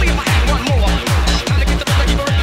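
Hard trance music: a four-on-the-floor kick drum at a little over two beats a second, each kick sweeping down in pitch, over steady hi-hats and synth layers.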